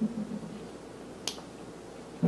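A single sharp click a little past halfway, over steady room hiss, with a brief low murmur at the start.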